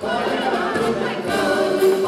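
A group of singers singing a frevo together in chorus, live on stage over a brass band.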